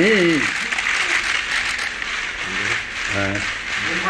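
Many press cameras' shutters clicking rapidly and continuously, with short shouted calls from photographers at the start and again after about three seconds.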